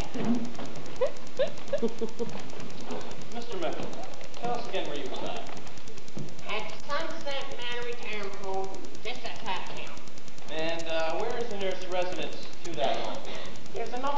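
Indistinct voices of actors speaking stage dialogue, with a few light knocks in the first two seconds.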